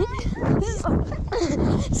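Small dogs barking and yipping in short sharp calls, over a heavy rumble of wind and movement on the microphone.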